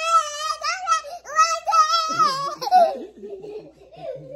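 A child laughing and giggling in a high, wavering voice, with a woman's lower voice joining in about two seconds in before the laughter dies away near the end.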